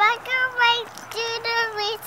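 A three-year-old girl singing a children's song unaccompanied, holding several notes near one pitch with short breaks between them.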